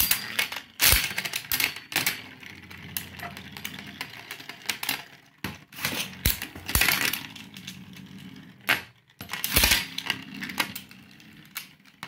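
Metal Beyblade spinning tops whirring on a plastic tray and clashing against each other and the tray's rim: a low steady whir under irregular sharp metallic clacks.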